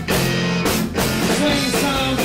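Live band playing rock music, a full band with pitched instrumental lines over a steady beat.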